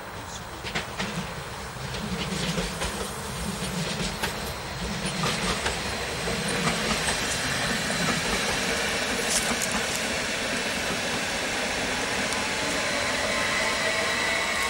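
Stadler FLIRT electric multiple unit passing close by, its wheels clicking over rail joints and switches. It grows louder as it nears, and a steady whine joins in as it goes by.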